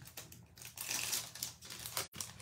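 Cellophane packaging crinkling and paper sheets rustling as a pack of foil-printed designer paper is handled and slid back into its clear plastic sleeve.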